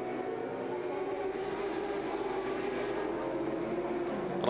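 Endurance racing motorcycles running hard at high revs, a steady high engine note that wavers slightly up and down as the bikes ride close together.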